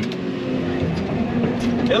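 Excavator's diesel engine running steadily, heard from inside the operator's cab as a low, even hum.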